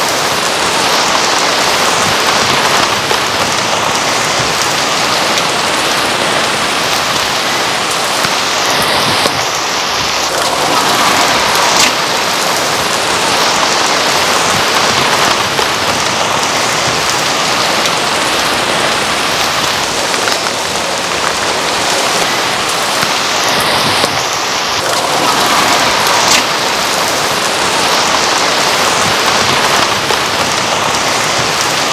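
Steady rain falling, an even hiss with a few sharp drip ticks.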